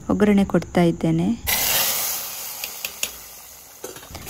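Tempering of hot oil with mustard seeds and curry leaves poured into a pot of sambar: a sudden loud sizzling hiss about a second and a half in, with a few crackles, fading away over about two seconds. A woman's voice speaks briefly before it.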